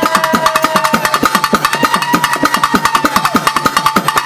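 Pambai and udukkai drums playing a fast, even rhythm, about eight to ten strokes a second, under a steady held high note.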